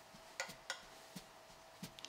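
Quiet room tone with a faint steady hum and four short, soft clicks spread over two seconds.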